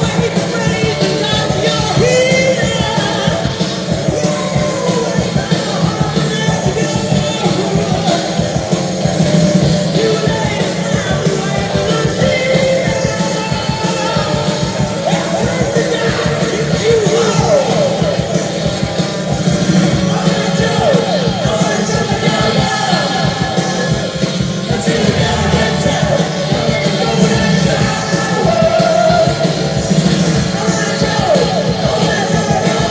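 A live rock band playing a song: electric guitars over a steady drum beat, with a sung vocal line.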